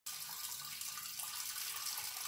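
A person urinating standing up: a steady stream of urine splashing into the water of a toilet bowl.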